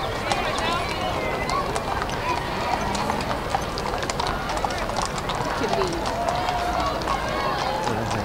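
Hooves of many horses clip-clopping at a walk on brick pavement, a dense, irregular patter of clicks, with people's voices in the crowd around.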